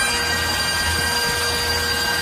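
Bagpipe music with its drones holding steady tones, mixed with a constant rushing noise and a low rumble.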